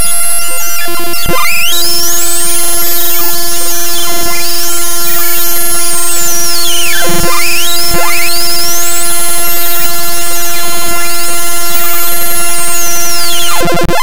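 Loud, harsh computer-generated one-line symphony played live from a ChucK program: noisy, buzzy tones with pitches sweeping up and down in arcs over a steady held tone. The sound breaks off and changes abruptly near the end.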